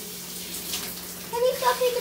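Water running steadily from a bathroom shower or tap. A child's voice calls out in the last half-second or so.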